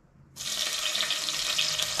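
Vegetables frying in hot coconut fat in a pot, a steady sizzle that starts abruptly about a third of a second in.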